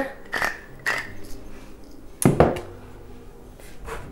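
Pepper mill grinding in two short strokes, then a single sharp knock about two seconds in as something hard meets the counter.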